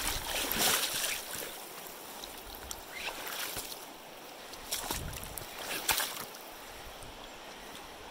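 Shallow river current rushing steadily over rocks, with several louder surges of noise about a second in, around three seconds and again around five to six seconds.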